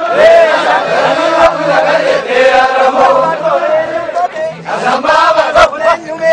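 A crowd of Oromo men chanting together, loud and continuous, their voices held and bent in a shared tune, with a couple of brief sharp knocks.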